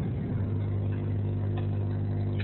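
A steady low hum with evenly spaced overtones, coming in about half a second in and holding at an even level.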